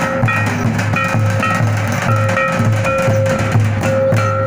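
Santal festival drums, a rope-laced barrel drum and a stick-beaten drum, playing a steady loud beat of about three strokes a second, with a higher pitched melody of short repeated notes over the drumming.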